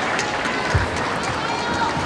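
Steady crowd murmur in a table tennis hall, with faint taps of the celluloid ball on bats and table as a serve starts a rally. A low thump comes a little under a second in.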